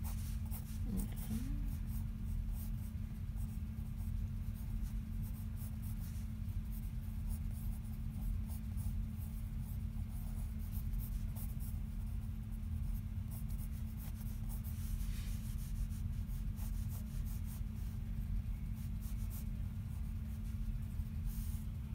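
Pencil scratching on sketchbook paper in short strokes, on and off, as lines are sketched. A steady low hum runs underneath.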